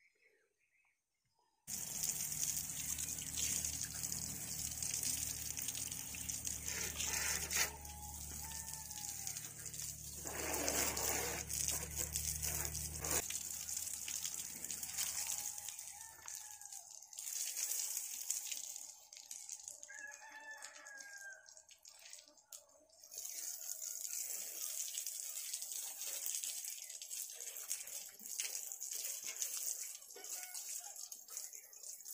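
Rooster crowing several times over a steady high-pitched hiss, with a low hum that stops about halfway through.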